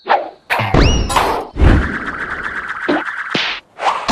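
Cartoon slapstick sound effects: two heavy thuds, the first with a quick rising squeak, then a steady hiss with fine rapid ticking that cuts off suddenly near the end.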